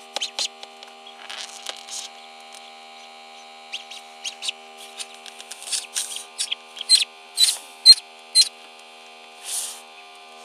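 Newly hatched ducklings peeping: short, high-pitched peeps, sparse at first, then a run of loud ones past the middle, over a steady electrical hum.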